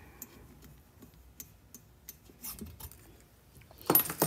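Faint, scattered light clicks and taps of small steel tools being handled as the valve seat cutter's pilot is drawn out of the valve guide in an aluminium cylinder head.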